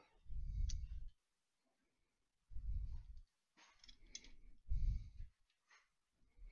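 Light clicks and taps of small metal parts as a black metal bracket, small screws and a screwdriver are handled and fitted together. Three low, muffled thuds come in between, the loudest sounds.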